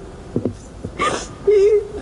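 A young woman crying into a microphone: a sharp, sobbing breath about a second in, then a brief, wavering, high whimper.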